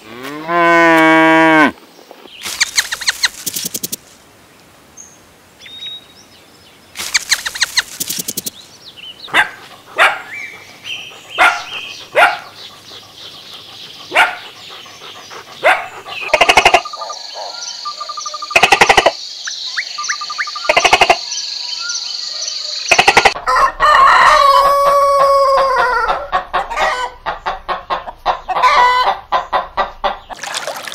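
A cow moos once at the very start, followed by a run of short animal calls and clicks. About 24 s in a rooster crows, and short calls follow near the end.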